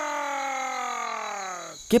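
A sheep's single long bleat, falling slowly in pitch and fading out shortly before a man starts to speak.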